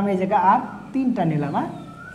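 A man's voice speaking in two drawn-out, sliding phrases, the second one saying 'eight'.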